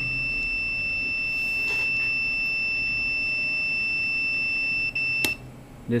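Digital multimeter on its continuity setting, beeping one steady high tone while the washer shifter's microswitch is closed. About five seconds in the tone cuts off with a click as the microswitch opens.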